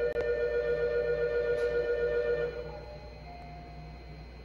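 Electronic station departure melody playing over the platform speakers as steady, held chime-like tones, ending about two and a half seconds in; a low platform hum remains.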